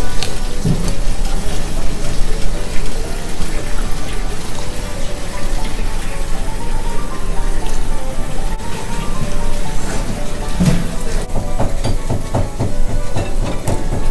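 Ramen noodles and rice being slurped and eaten with chopsticks, wet mouth and bowl noises, over quiet background music with a simple melody.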